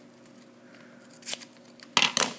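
Scissors snipping wrapping paper, and the paper being handled. It is mostly quiet, with a light snip a little past halfway and a louder sharp crackle of paper right at the end.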